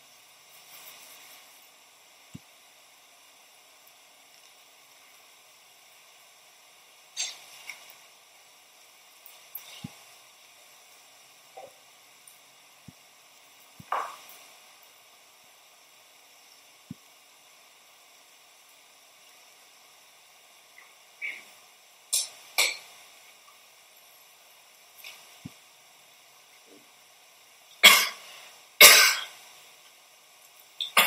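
Scattered coughs and throat clearing against a quiet room, a few faint clicks between them, the two loudest coughs about a second apart near the end.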